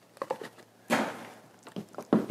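Handling of a CCS2 charging socket and its loom: a few light plastic clicks, then a short rustle about a second in, and faint clicks near the end.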